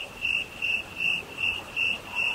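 Cricket chirping sound effect: one high chirp repeating evenly about two and a half times a second, the comedy cue for an awkward silence.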